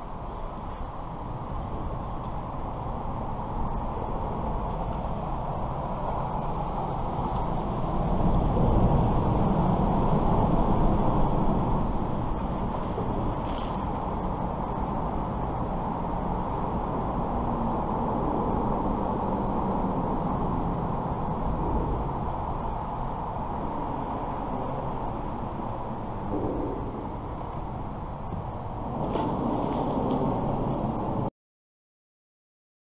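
Road traffic passing over a highway bridge overhead: a steady noise that swells for a few seconds about eight seconds in as a vehicle crosses, then settles back.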